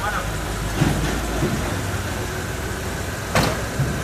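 Suzuki Vitara SUV's engine idling with a steady low rumble. A thump comes about a second in, and a car door slams shut shortly before the end.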